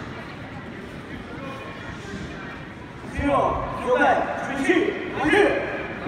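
Low murmur of a large sports hall, then from about three seconds in several loud shouted calls, each falling in pitch, from people at the karate bout.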